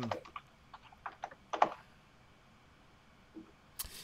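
Scattered soft clicks of typing on a computer keyboard for the first second and a half or so. Then near quiet, with a couple more clicks just before the end.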